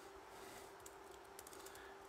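Faint computer keyboard typing: a run of quick, light key taps as text is entered, over a faint steady hum.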